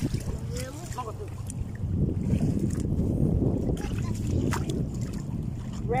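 Rushing wind on the microphone and shallow water lapping at the water's edge, a steady rough noise that swells from about two seconds in, with brief faint voices at the start.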